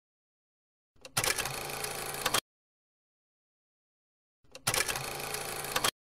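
A short mechanical-clatter sound effect, played twice: a faint tick, then about a second and a half of rapid clicking that cuts off sharply, the first about a second in and the second about four and a half seconds in, with dead silence between.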